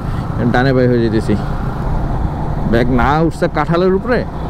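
A man speaking two short phrases over the steady low rumble of a Yamaha MT-15 motorcycle being ridden in traffic, engine and wind noise mixed together.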